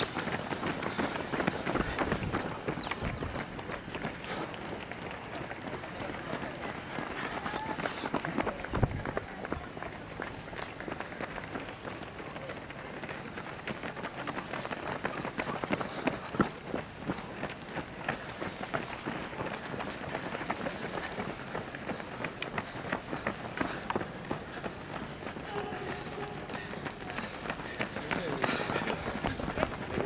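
Footsteps of many runners in a half marathon hitting asphalt, a continuous patter of quick strikes as a pack passes close by, with voices in the background.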